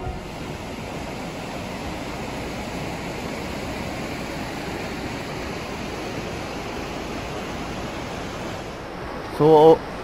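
A fast mountain river rushing over rocks, a steady, even roar of water.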